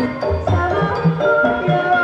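Javanese gamelan music of the kind that accompanies a kuda lumping (jaran kepang) dance: kendang-style drum strokes under held, pitched metallic and melody tones. A high melody note is held from about a second in.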